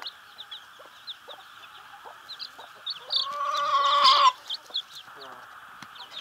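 Young Isa Brown chicks peeping in many short, high chirps. About three seconds in, a louder drawn-out chicken call lasting about a second rises over them.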